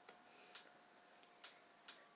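Near silence broken by a few faint, irregular clicks.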